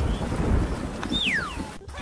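Wind buffeting the microphone, a steady low rumble. About a second in, a whistle-like tone glides down in pitch.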